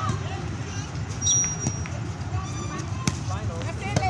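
Volleyball game sounds: steady crowd and player voices with two sharp ball hits, about a second and a half apart, and a short high squeak before the first one.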